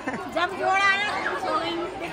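People talking: indistinct chatter of voices, with no clear words.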